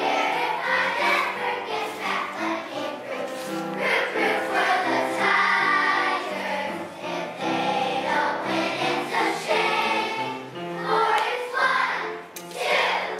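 A large children's choir singing a song in unison.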